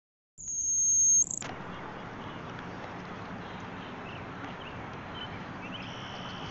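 A loud, high, steady tone lasts about a second and cuts off with a click. It is followed by steady outdoor background noise with a few faint chirps.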